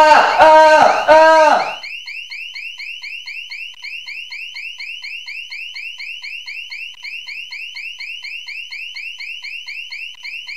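A person yelling "Ah! Ah!" over and over in a steady, alarm-like rhythm, about two loud shouts a second, which stops a little under two seconds in. A much quieter, fast, even train of short high rising chirps follows and keeps on.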